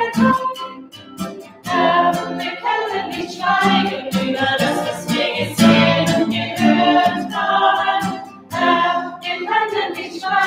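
A small group singing a hymn together, led by women's voices, to an acoustic guitar, in phrases with short breaths between them.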